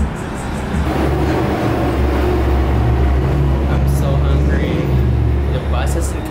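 Engine of a large road vehicle running close by: a low, steady rumble that swells about half a second in and fades just before the end.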